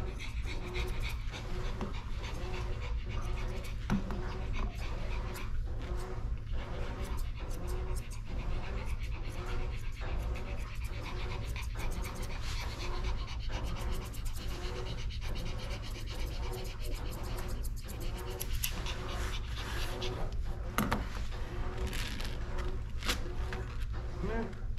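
Pomeranian panting in a steady rhythm, mixed with the short snips of straight steel grooming shears cutting its coat, over a steady low hum.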